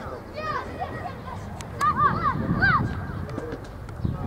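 High, indistinct shouts and calls from players and people by a football pitch: a couple about half a second in, then a burst of several near the middle, over a steady outdoor rumble.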